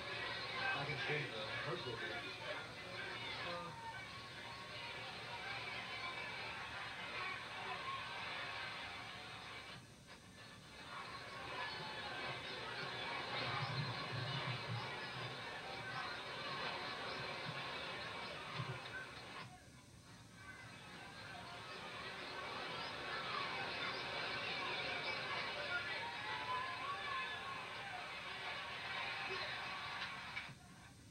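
Football game broadcast audio from a television speaker: muffled voices and music run throughout, dipping briefly twice.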